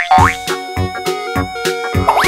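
Playful background music with a regular beat of about three strokes a second, opening with a quick rising cartoon-style 'boing' sound effect.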